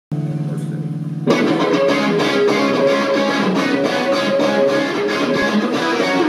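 Live rock band: a held chord rings for about a second, then the full band comes in with drums and cymbals under a Stratocaster-style electric guitar and bass.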